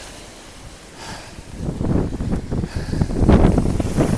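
Strong cyclone wind gusting across the phone's microphone: a brief lull, then from about a second and a half in a low, irregular buffeting that stays loud until the end.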